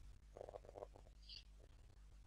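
Near silence: room tone, with a faint low murmur about half a second in.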